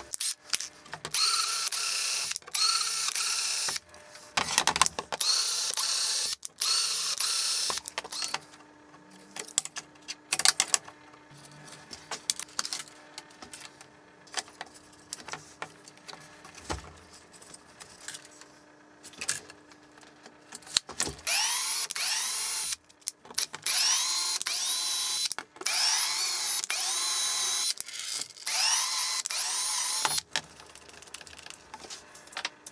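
A cordless drill runs in repeated short bursts of a second or two on slotted plastic wiring trunking and an aluminium plate, its motor whine climbing as each burst starts. Between the two runs of bursts there is a quieter stretch of clicks and knocks as the parts are handled.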